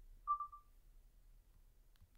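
A single short electronic beep about a quarter second in, one clear tone that fades out quickly, over faint room tone.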